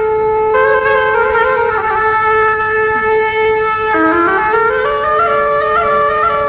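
Instrumental interlude of an Azerbaijani song: a wind instrument plays an ornamented melody over a steady held drone note. The melody dips low about four seconds in, then climbs back up.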